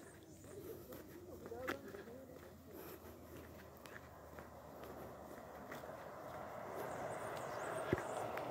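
Faint footsteps on a paved road as the person filming walks, with distant faint voices early on and a low outdoor hiss that builds slightly toward the end.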